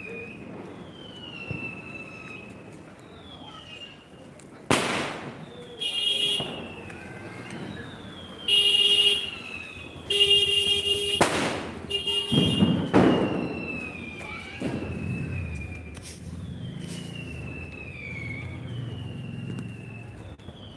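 Firecrackers going off: sharp bangs about five seconds in and again around eleven and thirteen seconds, with louder whistling, hissing bursts in between. A high, falling whistle repeats every second or two.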